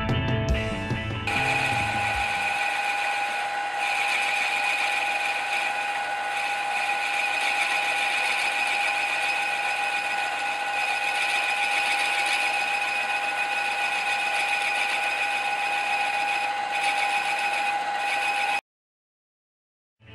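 Milling machine running with a boring bar cutting the bore of a brass model steam-engine cylinder: a steady whine with several high tones. It cuts off suddenly near the end.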